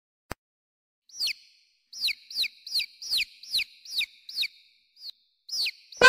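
A bird chirping: a series of about ten quick chirps, each falling sharply in pitch, a few a second. A short click comes before them.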